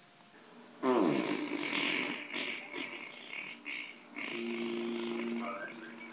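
Hard laughter: a loud falling squeal about a second in, then breathy, wheezing laughs, and a held vocal note near the end.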